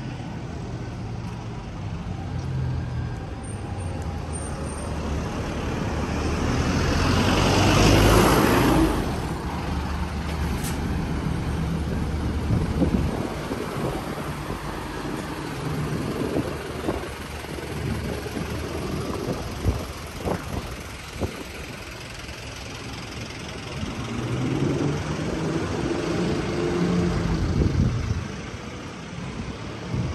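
Street traffic: a city bus's diesel engine grows louder and passes close about eight seconds in, the loudest moment, then fades. Lighter traffic follows with a few short knocks, and another vehicle's engine rises and falls away near the end.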